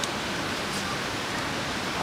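Steady, even hiss of outdoor background noise, with no distinct event in it.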